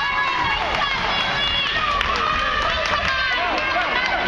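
Basketball players running on a gym floor, their footsteps mixed with the voices of players and spectators shouting across the gym.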